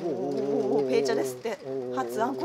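A man's voice making a long, wavering hum with a low pitch, breaking off briefly about one and a half seconds in before going on.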